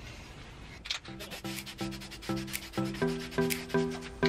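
Hand scrubbing of a painted metal engine bracket, stripping off the old paint. Regular back-and-forth strokes about two a second start about a second in, each stroke with a squeaky rasp.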